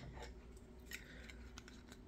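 Near silence, with a couple of faint clicks from small items being handled in an open cardboard box.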